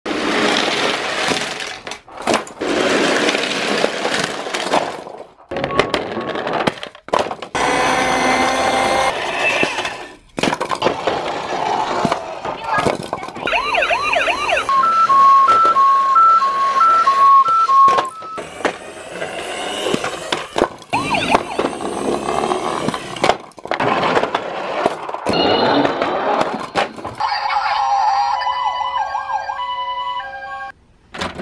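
Toy police cars and ambulances playing electronic siren sounds and sound effects, including a two-tone hi-lo siren about halfway through, mixed with the clatter of toy cars crashing down a wooden ramp.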